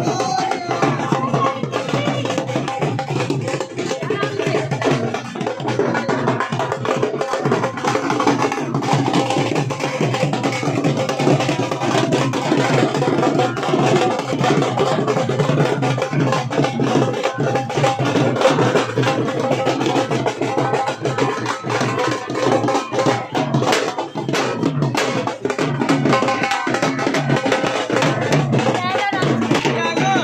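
Dhol drums being beaten continuously, with crowd voices mixed in.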